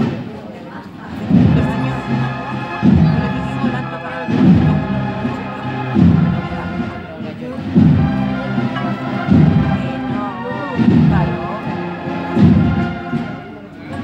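Procession band playing a slow processional march, with sustained melody notes over a heavy bass drum beat about every second and a half.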